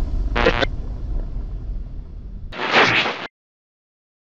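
Boom-style logo sting sound effect: a deep low rumble carries on, with a short sharp burst about half a second in and a louder rushing burst near three seconds. The sound then cuts off abruptly to silence.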